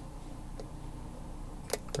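Faint room hum with small ticks of a steel hook pick working against pins and warding inside a padlock's keyway, with two short sharp clicks near the end as the pick finds a pin.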